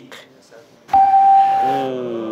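Game-show answer-board sound effect: a single steady electronic tone about a second long, starting suddenly about a second in as an answer is revealed scoring zero points. A man's voice comes in near the end.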